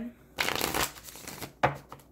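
A deck of tarot cards being shuffled by hand: a rustle of about half a second starting about half a second in, then a shorter burst of card noise near the end.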